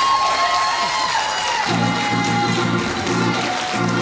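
A church band plays a short musical flourish to acknowledge being introduced, with keyboard-type held notes sliding up and down and then steady low chords coming in under them. The congregation applauds lightly.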